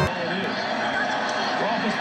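Low, steady background murmur of bar-room voices, with faint indistinct speech over it.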